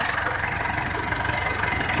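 Tractor engine idling steadily.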